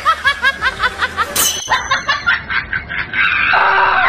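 Laughter: a rapid string of short 'ha' bursts, about six a second, for roughly the first two seconds, giving way to a denser, steadier sound about three seconds in.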